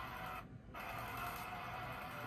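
Concert livestream audio playing from a laptop's speakers, between stretches of singing, with a short drop about half a second in.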